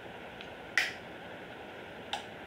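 One sharp, short click about three-quarters of a second in, with a fainter tick just before it, over a steady low hiss.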